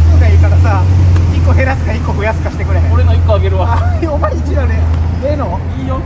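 Two men talking over a loud, low, steady rumble of road traffic beside a city street, the rumble easing off near the end.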